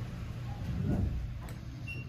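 Low steady rumble inside an Otis hydraulic elevator car, with a light click about one and a half seconds in.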